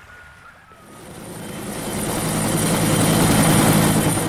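Helicopter approaching overhead, its turbine and rotor noise swelling from faint to loud starting about a second in.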